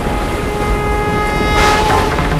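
Dramatic TV background score: a sustained horn-like tone held over a deep rumble, with a loud rushing swell about one and a half seconds in.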